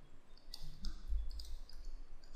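A quick run of quiet clicks and taps from a pen stylus on a writing tablet as handwriting is written.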